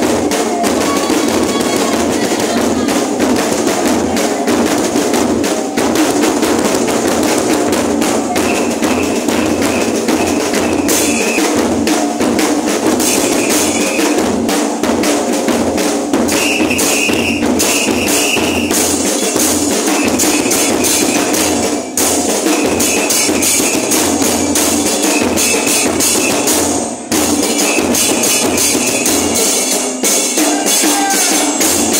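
Murga drum section, bass drums with cymbals (bombos con platillo), playing a continuous driving rhythm, with a few short high steady tones coming and going over it.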